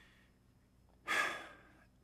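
A single audible breath from the speaker about a second in, a short hiss that fades away, taken in the pause between phrases.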